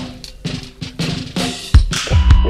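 Hip-hop instrumental beat: a drum kit playing kick and snare hits in a quick, steady pattern over sustained pitched tones.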